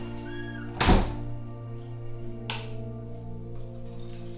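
Background music with held notes, and a workshop door thudding shut about a second in, followed by a lighter click about a second and a half later.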